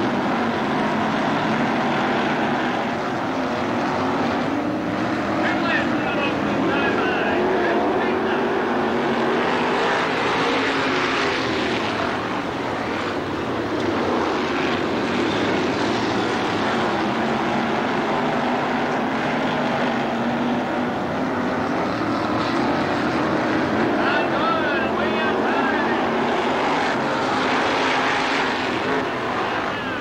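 Several dirt-track modified race cars' engines running together as the field circles the track, loud and continuous. The engine pitch rises and falls as cars pass.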